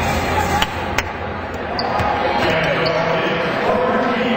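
Basketballs bouncing on a hardwood court, a few sharp bounces in the first two seconds, over a steady murmur of voices.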